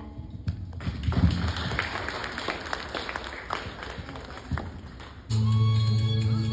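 Audience applauding for about four seconds. Then, near the end, a karaoke backing track starts abruptly.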